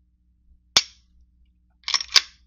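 Dry-firing the hammer-fired STI GP6 / Grand Power K100 pistol: one sharp metallic click about a second in as the trigger breaks crisply and the hammer falls on the empty chamber. Two more quick clicks follow near the end as the hand works the slide.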